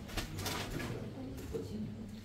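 Faint murmur of voices in a room with a seated audience, with a few soft knocks and rustles in the first half second or so.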